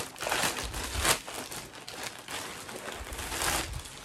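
Plastic packaging crinkling and rustling as it is handled and opened, with a sharp crackle about a second in and a longer rustle near the end.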